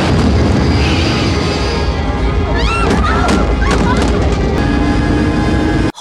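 Film soundtrack of an airliner's main landing gear striking the runway in a touch-and-go: a loud, sustained rumble with booms under dramatic music, and a few brief voices about halfway through. It cuts off just before the end.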